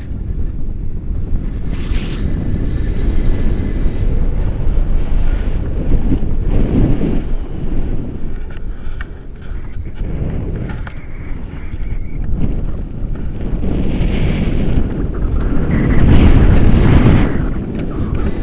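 Airflow buffeting the microphone of a pole-mounted camera during a tandem paraglider flight: a loud, low rumble that swells and fades in gusts, loudest near the end.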